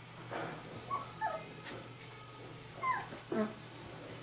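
Rhodesian Ridgeback puppies whimpering and yipping at play, with short cries that fall in pitch: two about a second in and two more near the end, the last sliding down low.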